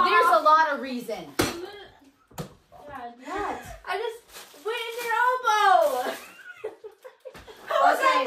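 Several people's voices, laughing and exclaiming, with one long falling vocal sound a little past the middle. There is a single sharp knock about a second and a half in.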